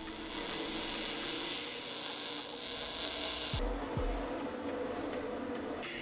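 A metalworking power tool running on steel with a steady hiss and a thin high whine. It cuts off a little past halfway, two dull low thumps follow, and the hiss starts again near the end.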